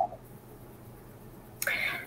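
A pause with only faint low hum, then near the end a short breathy, whisper-like sound from the woman on the video call as she starts to answer.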